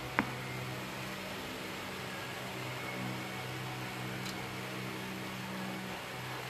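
Steady low room hum with hiss. A single sharp click comes just after the start, and a faint tick follows about four seconds later.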